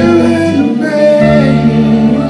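Live band playing: electric and acoustic guitars, bass, drums and fiddle, with a woman singing. The bass drops out briefly and changes to a new note about a second in.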